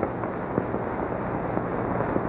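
Steady crackling hiss with a few faint clicks: the background noise of an old television soundtrack between words.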